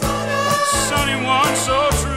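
Background music: a song with a wavering melodic lead over sustained bass and a steady drum beat.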